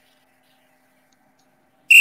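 Near silence, then near the end a sudden loud, high-pitched steady squeal that lasts about half a second.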